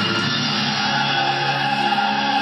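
Recorded classical music with an orchestral, operatic character starts abruptly and plays steadily, with long held notes.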